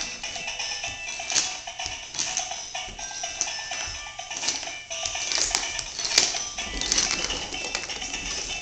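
Tinny electronic melody from a child's musical lion ride-on toy, a string of short simple notes, with a few light clicks and knocks.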